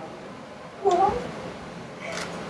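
A person's short cry, once, about a second in, its pitch bending up and then down.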